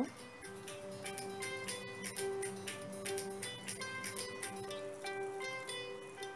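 Background music: a melody of short plucked-string notes over a steady held low tone.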